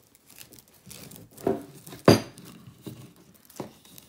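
Hands unlooping a braided rope strop from a twisted rope on a wooden table: rope rustling and sliding, with scattered taps and a sharp knock about two seconds in.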